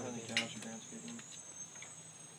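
A steady, high-pitched insect trill, like crickets, running on throughout. In the first second there are a few short voice sounds and a single sharp click.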